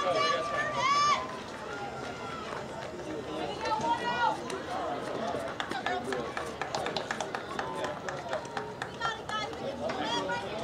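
High-pitched voices calling and shouting across a softball field, with one long held call at the start and more calls later. A quick run of sharp clicks comes in the middle.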